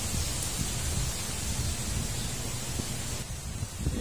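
Wind blowing through the leafy canopy of a duhat (Java plum) tree, a steady rustling hiss over an uneven low rumble of wind on the microphone. The hiss eases about three seconds in.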